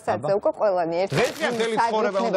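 Conversation: people talking in Georgian, with a man laughing.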